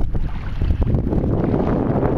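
Wind buffeting the microphone as a steady low rumble, mixed with water swishing around the legs of someone wading through shallow water.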